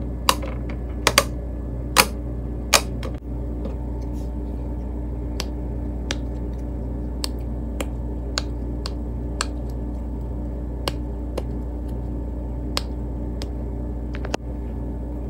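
Silicone pop-it fidget toy bubbles being pressed: several sharp pops in the first three seconds, then softer clicks every half-second or so, over a steady low hum.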